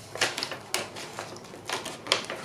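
Scrapbooking supplies handled off-camera: a few light clicks and rustles of paper and plastic packaging, with a cluster near the start, one just before the middle and more near the end.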